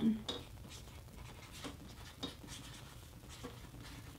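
A pen signing a print on luster-finish photo paper: faint, short scratching strokes of a handwritten signature.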